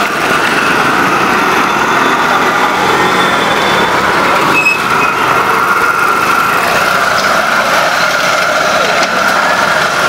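Steady engine noise of street traffic, a small engine running without a break.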